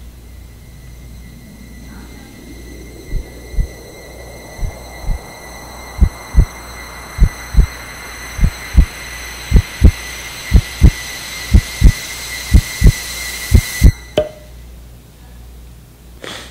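Heartbeat sound effect: pairs of low thumps begin about three seconds in and come gradually quicker, over a swelling hiss with a thin high whine. Everything cuts off suddenly near the end.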